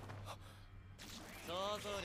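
Quiet anime soundtrack, then near the end a man's voice from the show in a brief voiced sound, its pitch arching up and down.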